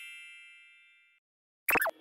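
A bright chime sound effect rings and fades away over about a second, followed by a short sound with falling pitch near the end.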